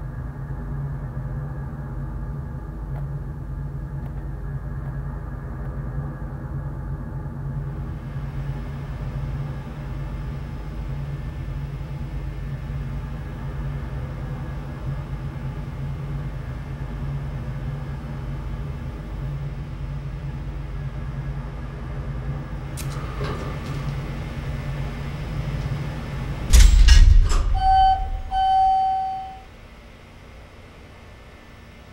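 Elevator car running with a steady low hum, then a loud clunk near the end as it stops, followed by a single steady electronic chime about a second and a half long.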